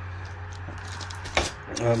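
A plastic bag of small metal mounting hardware being handled, with one short sharp crinkle and clink about a second and a half in, over a low steady hum.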